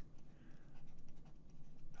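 Faint scratching and light tapping of a stylus writing a word.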